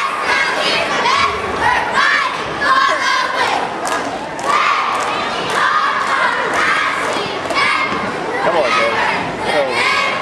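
A girls' cheer squad shouting a cheer while the crowd yells and cheers.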